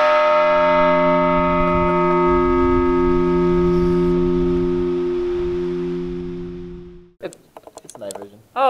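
Large bronze bell just struck once, ringing with a deep hum and several steady overtones that slowly fade, cut off abruptly about seven seconds in.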